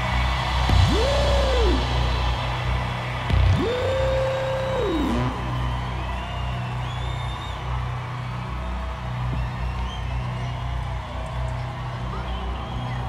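A live band's closing chord ringing out over a low sustained hum after the song's final hit, slowly fading. Two long gliding whoops rise and fall over it, one about a second in and one about four seconds in, with crowd cheering in the background.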